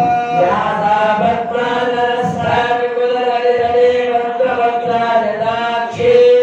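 Mantras chanted in a continuous melodic recitation, the voice holding long steady notes and gliding between them.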